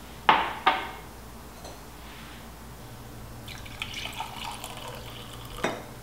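Two glass clinks, then cooking liquid poured from a glass bowl into a glass measuring cup, running for a couple of seconds, and another clink near the end.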